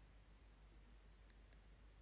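Near silence: room tone, with two faint short ticks about a second and a half in.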